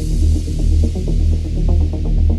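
Deep house track: a heavy sustained bass that swells and dips under a figure of short repeating melodic notes, with a high noise wash fading away.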